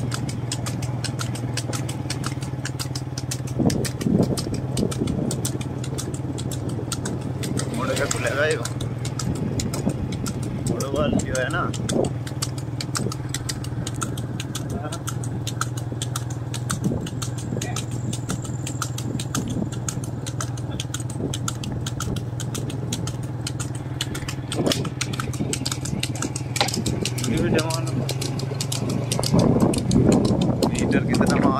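Motorcycle engine running steadily at low speed while following behind a buffalo cart, with a few brief bursts of voices.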